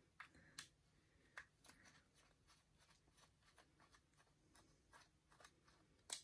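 Near silence, with faint scattered small clicks of a flathead screwdriver turning the body screw out of a model locomotive's plastic chassis.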